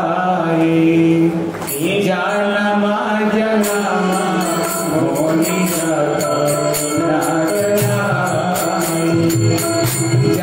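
Indian devotional singing: a voice holding long, drawn-out notes in a chant-like melody. From about four seconds in, a jingling percussion such as a tambourine or hand cymbals joins, keeping a steady beat.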